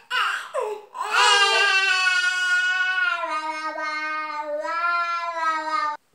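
Infant vocalizing: a few short sounds, then one long, drawn-out call held for about five seconds that stops suddenly.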